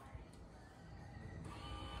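Electric lifting motor of a Smart Lifter LM car-boot hoist running faintly and steadily, winding up its strap to raise a folded wheelchair.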